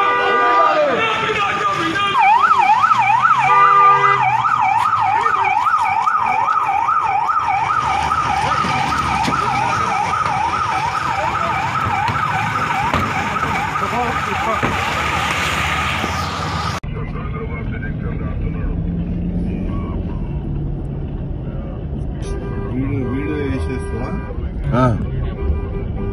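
Police vehicle siren in a fast yelp, its pitch swinging up and down a couple of times a second, cutting off suddenly about two-thirds of the way through. After it comes a quieter steady rumble of road traffic.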